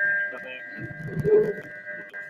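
Faint, indistinct speech over a video-conference audio link, quieter than the talk around it, with a steady high-pitched whine running underneath.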